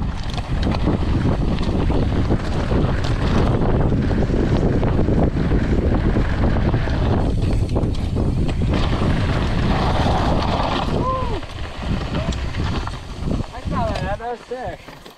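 Wind buffeting a helmet-mounted camera's microphone together with knobby mountain-bike tyres running over loose, dusty gravel and rocks at speed down a downhill trail. A brief whooping shout comes about eleven seconds in, and the rushing dies down near the end as the bike slows.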